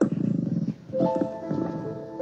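Keyboard music starting suddenly: a low, buzzing rumble for under a second, then held chords, the introduction to the responsorial psalm that follows the first reading at Mass.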